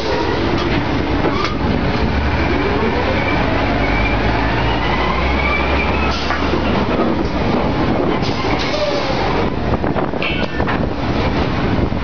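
Drilling rig floor machinery running loud and steady, with a whine that rises slowly in pitch through the first half and sharp metal clanks of pipe and tongs, several near the end.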